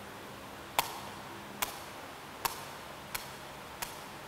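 A woven sepak takraw ball being headed straight up again and again: five sharp taps, roughly one every three-quarters of a second, the first the loudest.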